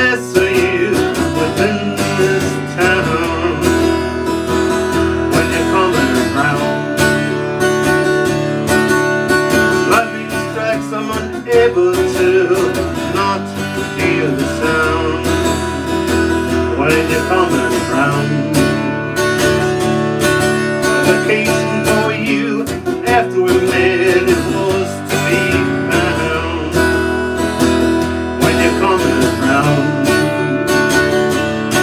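Steadily strummed acoustic guitar with a harmonica playing the melody over it, an instrumental passage of a country-folk song.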